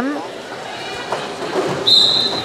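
Referee's whistle, one short high blast near the end, signalling the start of a roller derby jam, over the hum of a sports hall crowd.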